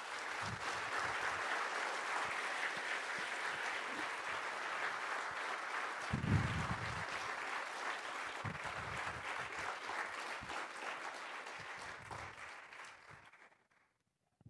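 Audience applauding steadily, dying away and stopping near the end, with a brief low rumble about six seconds in.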